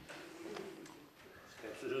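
Quiet hall room tone with a faint, low, hum-like voice sound in the first second, then a near-silent pause. A man starts speaking right at the end.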